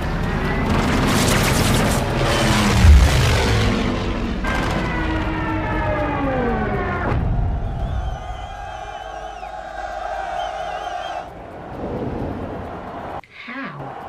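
War-film soundtrack: dramatic music with several falling, sliding tones and a heavy boom about three seconds in, easing into a quieter sustained passage near the middle.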